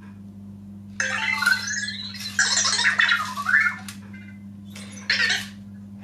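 Anki Vector robot's electronic chirps and warbling beeps, gliding up and down in pitch, in answer to a spoken greeting; they run from about a second in to about four seconds, with one more short burst near five seconds.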